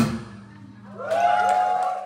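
A rock band's final hit cuts the song off, its ring dying away over a low steady tone. About a second later, several rising whoops from the audience come in.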